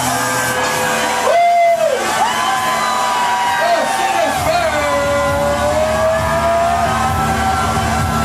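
Electronic dance music from a DJ set, heard loud in a club: a lead line sliding up and down in pitch over a low bass, with a sharp swoop about a second and a half in.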